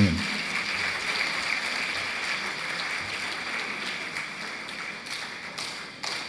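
Audience applause, dying away gradually.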